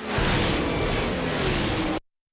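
A loud rumbling roar with a faint, slowly falling tone running through it, cutting off suddenly at the end.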